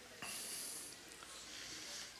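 Faint breath drawn in through the nose, close to a headset microphone, lasting about half a second just after the start; low room tone otherwise.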